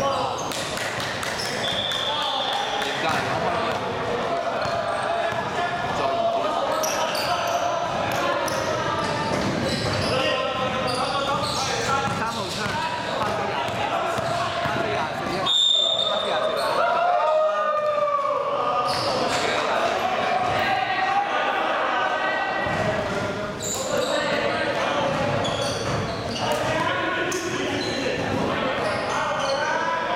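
Basketball game in a large echoing sports hall: a ball bouncing on the court and players' shouts and chatter. A referee's whistle blows briefly about 2 s in and again about 15 s in, the second calling a foul.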